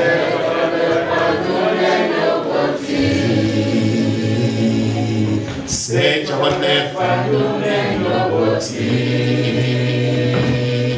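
A man singing a gospel chorus into a hand-held microphone, with other voices singing along; the song comes in phrases of about three seconds with short breaks between them.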